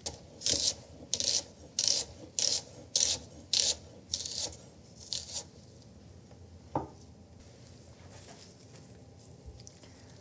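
A wide-bladed kitchen knife slicing through a sweet onion on a wooden cutting board: about nine crisp strokes in the first five and a half seconds, roughly one every 0.6 s. Near seven seconds in comes a single knock as the knife is laid down on the board.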